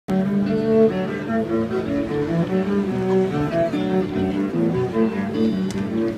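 Cello played with the bow: a quick melody of held notes, changing several times a second.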